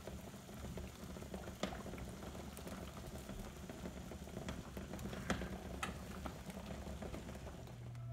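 Water at a rolling boil in a stainless steel stockpot used as a water-bath canner, bubbling steadily while jam jars are processed, with a few sharp clicks scattered through it.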